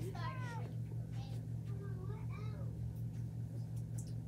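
A cat meowing twice, short gliding calls, the first falling in pitch, over a steady low hum.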